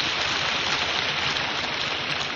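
A lecture-hall audience applauding, an even, steady clatter.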